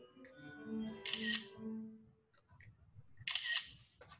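Two short camera-shutter sounds about two seconds apart, as screen-capture photos of a video call are taken, over faint background music.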